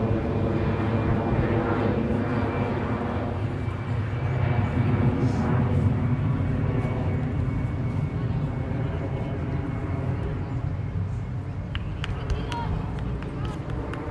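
An engine drone with many even tones, growing louder to about five seconds in and fading away over the following seconds, as of an aircraft passing over; distant voices from the field underneath.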